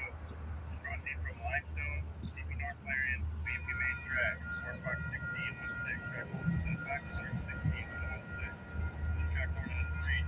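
Railroad grade-crossing warning bell starting about three and a half seconds in and ringing steadily as the crossing gates lower, the signal of an approaching train; chirping and a low rumble run underneath.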